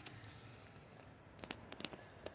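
Near quiet: faint background hiss, with a few short, sharp clicks about one and a half seconds in.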